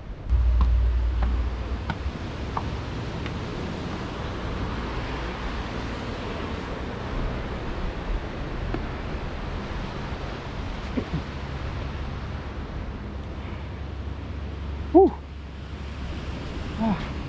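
Wind rumbling on the microphone over a steady wash of sea surf. A brief pitched sound stands out about fifteen seconds in.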